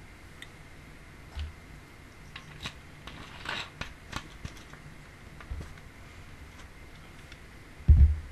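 A plastic bottle handled close to the microphone: scattered small clicks and a short crinkle about three and a half seconds in, then a low thump near the end.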